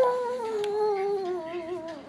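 A baby's long, drawn-out vocal sound: one unbroken note that slowly falls in pitch and stops near the end.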